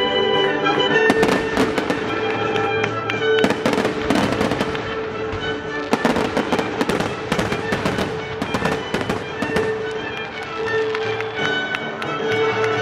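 Aerial fireworks shells bursting in a rapid series of bangs and crackles, starting about a second in. Under them, live baroque orchestral music with bowed strings plays on steadily.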